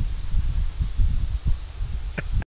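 Wind buffeting the microphone outdoors: a low, uneven rumble that swells and drops in gusts.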